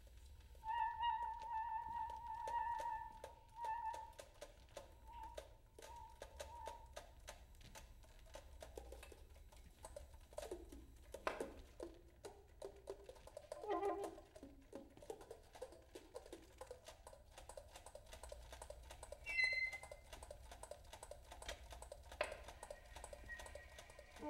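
Saxophone quartet playing quiet free improvisation: a held high note with a wavering pulse for the first few seconds, breaking into short repeated notes, then sparse soft sounds with many scattered key clicks and a couple of brief high notes near the end.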